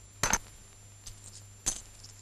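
Sharp clicks in a quiet room, a double click about a quarter second in and a single one past halfway, over a steady low hum.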